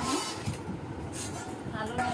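Short snatches of voices, with a steady low rumble in the background.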